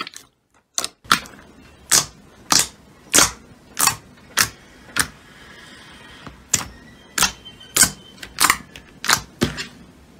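Glossy slime being pressed and poked with fingers, giving a string of sharp, loud pops as trapped air pockets burst, about one every half-second to second, with a short pause about halfway through.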